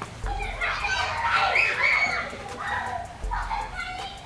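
Children's voices in the background, a run of short, high calls and shouts as they play.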